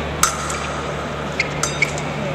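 Épée blades clashing: four sharp metallic clinks that ring briefly. The first and loudest comes about a quarter second in, and three quicker ones follow near the end, over a steady low hum.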